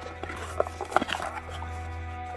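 Background music with a steady low bass tone and sustained notes. A few light clicks about half a second and a second in come from a small device being handled out of its cardboard box.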